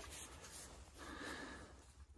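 Faint rustling of a braided rope being handled in a cotton work glove, with a slight swell about a second in.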